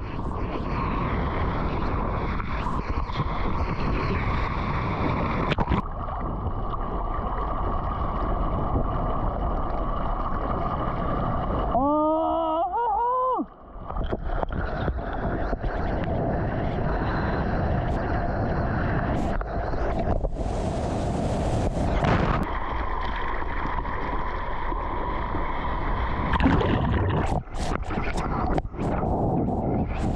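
Ocean water rushing and splashing right against a surf action camera at the water's surface, with wind on the microphone. About twelve seconds in, the wash briefly drops away and a short rising whoop from a surfer sounds. A burst of hissing spray comes a little past the middle.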